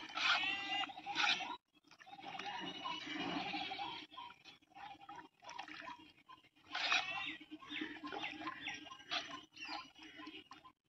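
Goats bleating several times in short wavering calls, over the swish and slosh of a hand stirring water in a metal basin.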